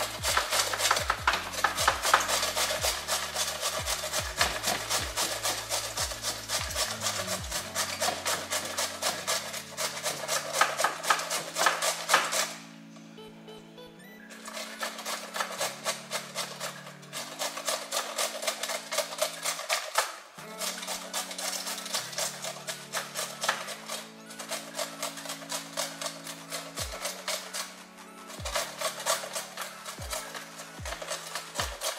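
Cauliflower being grated on a flat metal hand grater: quick, repeated rasping strokes with a few short pauses, the longest about halfway through, over background music with a steady bass line.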